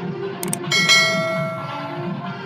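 Subscribe-button animation sound effect: two quick mouse clicks, then a notification bell that rings out for about a second.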